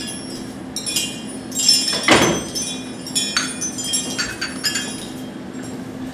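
Repeated small clinks and rings of glass or china being handled, irregular and overlapping, with one louder clatter about two seconds in. A steady low hum runs underneath.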